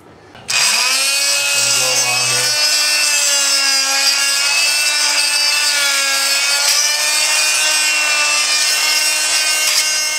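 Oscillating multi-tool run on high speed, its blade scraping leftover thin-set mortar out of the joints between floor tiles. The buzz starts about half a second in with a quick rise in pitch, then holds steady, wavering slightly in pitch as the blade bites into the joint.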